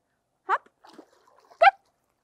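A sea otter heaving itself up out of a pool with a splash of water, and two short squeaks that slide sharply upward in pitch, the second the loudest.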